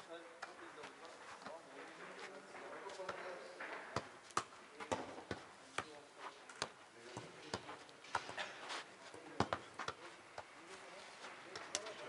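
A football being kicked and juggled on an artificial-turf pitch: a run of irregular sharp thuds of foot on ball, closer together from about four seconds in. Faint voices sit in the background.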